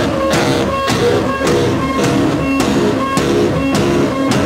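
Loud live heavy jazz-metal from an instrumental trio: baritone saxophone, bass guitar and drum kit playing together. Drum and cymbal hits land about twice a second under held, pitched sax and bass notes.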